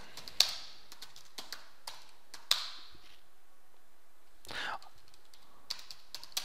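Computer keyboard being typed on slowly: a few sparse, irregular key clicks, the loudest about half a second and two and a half seconds in.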